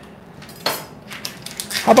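A kitchen knife clicking once, sharply, against a hard surface about two-thirds of a second in, followed by a few faint ticks.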